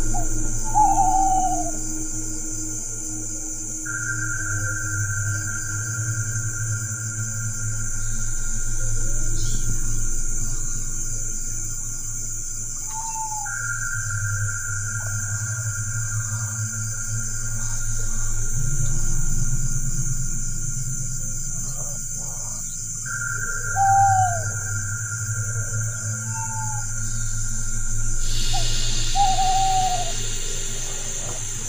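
Eerie ambient background music of long sustained droning tones, with a short falling owl-like hoot heard about five times.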